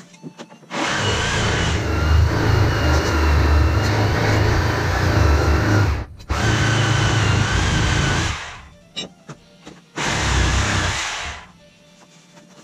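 A handheld power tool run in three bursts that start and stop abruptly: a long run of about five seconds, a very brief break, a second run of about two seconds, then a last short run after a pause of over a second.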